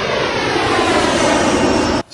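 A loud rushing roar like a jet aircraft passing overhead, cut in as a sound effect between shots. It starts and stops abruptly, and its pitch slowly sweeps downward.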